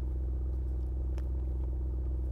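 Audi RS Q8's twin-turbo 4.0-litre V8 idling steadily, heard from behind the car near its exhaust.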